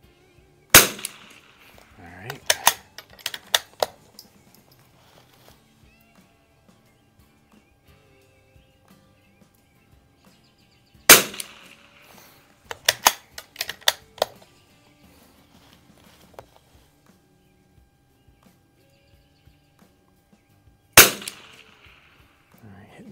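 Three .22 LR shots from an Anschutz 64 MP bolt-action rifle, about ten seconds apart. The first two are each followed, a second or two later, by a quick run of metallic clicks as the bolt is worked to eject the case and chamber the next round.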